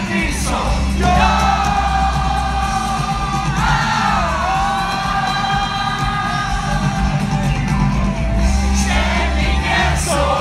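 Live rock music from a stadium concert, loud and steady, heard from within the crowd. Long held sung notes carry over the band and a heavy bass, with crowd voices and whoops mixed in.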